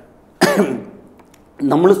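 A man clears his throat once, about half a second in: a sudden, short sound that trails away within half a second. Speech resumes near the end.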